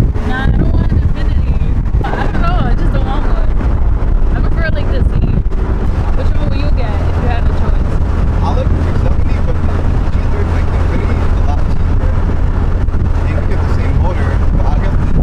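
Steady low engine and road rumble inside the cabin of a moving car, with wind noise on the microphone, under indistinct talk.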